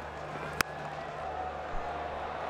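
Cricket bat striking a fast-bowled ball: a single sharp crack about half a second in, over a steady stadium crowd murmur.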